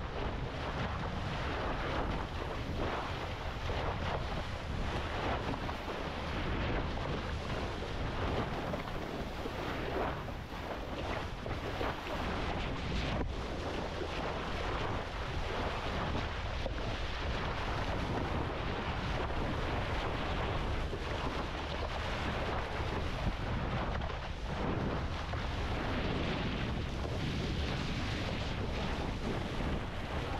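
Steady wind buffeting the microphone over rushing, splashing sea water alongside a moving boat.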